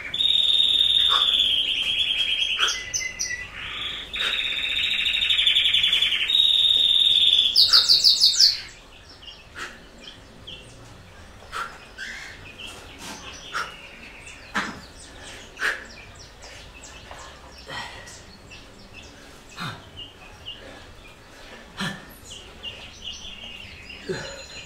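A songbird singing long, rapid, high-pitched trills in phrases of a second or two, ending in a quick run of higher notes about eight seconds in; after that only scattered short chirps.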